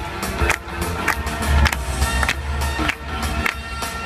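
Up-tempo dance music for a couple's competition routine, with a sharp beat nearly twice a second, mixed with dancers' shoes scuffing and tapping on the wooden floor.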